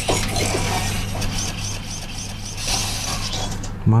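Servo motors of an app-controlled Optimus Prime robot toy whirring and clicking as it moves its arms, with a run of quick repeated chirps, about five a second, in the middle.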